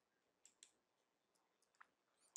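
Near silence, with a few faint short clicks, about half a second in and again near the end.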